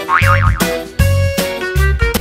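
Upbeat background music with a steady beat and plucked-sounding notes, with a short warbling, wobbling cartoon sound effect near the start.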